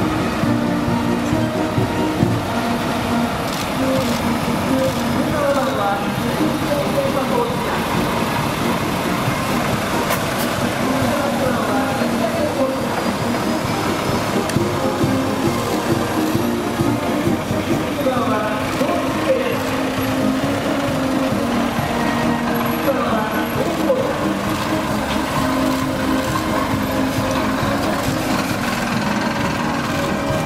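Police trucks, an armoured bus and vans driving slowly past one after another, engines running, with voices heard over them throughout.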